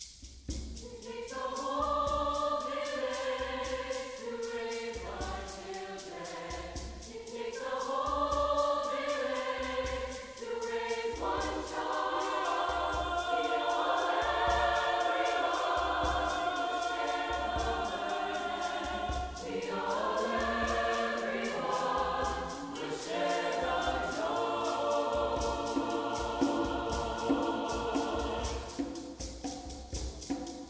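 Mixed choir singing in phrases, starting about a second in, with hand drums keeping a steady beat underneath.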